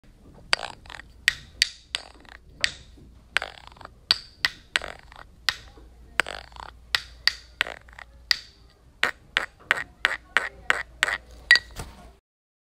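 A run of sharp, short clicks or knocks at uneven spacing, about two to three a second, quickening near the end and then stopping abruptly.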